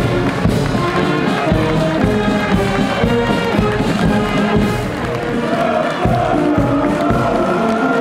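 Brass marching band playing a march, held brass notes over a steady drum beat.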